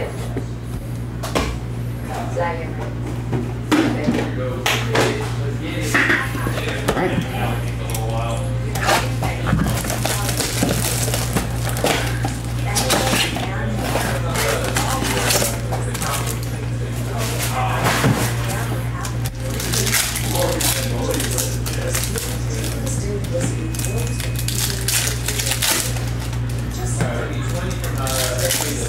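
Trading card box and foil packs being handled and opened by hand: a run of crinkling, rustling and sharp clicks over a low steady hum.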